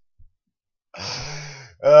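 A man's breathy sigh, trailing off after a laugh, about a second in, after a near-silent pause.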